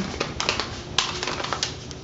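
Sheet of paper being folded and creased by hand along its scored lines, with several sharp crackles.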